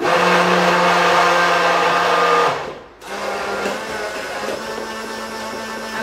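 Electric hand blender running in a glass jar, blending a thick tahini dressing until creamy. It runs loud and steady for about two and a half seconds, cuts out, then runs again more quietly.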